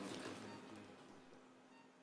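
Near silence: faint room tone with a low steady hum, while faint noise fades away over the first second or so.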